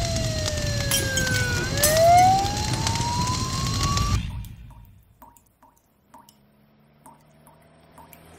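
A siren wailing slowly down and then back up in pitch over a bed of street traffic noise. It cuts off abruptly about four seconds in, leaving a few faint ticks.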